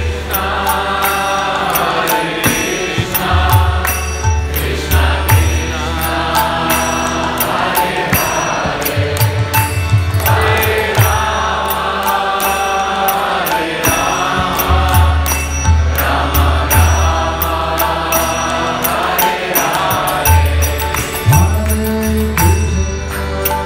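Kirtan: a man chants a mantra in sung phrases to a harmonium, whose reed chords sustain underneath. Light percussion keeps a steady beat throughout.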